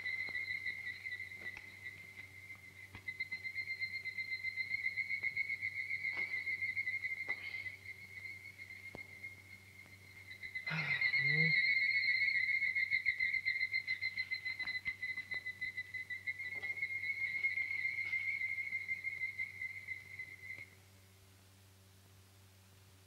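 A high animal trill held at one steady pitch, pulsing fast and swelling and fading, that stops suddenly near the end. A brief knock comes about halfway through.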